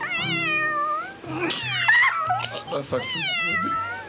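A man imitating a cat with three drawn-out meows, each about a second long, the pitch sliding and wavering.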